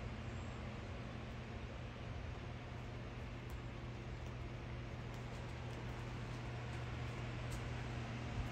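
Electric fans running steadily: a constant low motor hum under an even rush of moving air.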